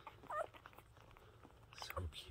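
A newborn husky puppy gives a short, wavering squeak while nursing, amid faint smacking clicks of suckling.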